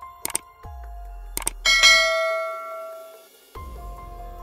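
A couple of short mouse-click sound effects, then a bright bell chime that rings out and fades over about a second and a half: a subscribe-button click and notification-bell sound effect.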